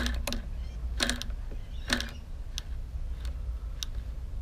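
Homemade single-solenoid engine built from a Cox .049 model engine, clicking slowly and unevenly: six separate sharp clicks, the loudest two with a dull thunk, as the solenoid pulls in. Its micro switch is playing up.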